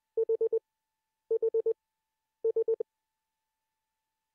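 Morse sidetone keyed by a Begali Intrepid semi-automatic bug: three short strings of dits at one steady pitch, about four dits each and roughly a second apart. Each string stops cleanly as the dot damper brings the vibrating dot pendulum to rest.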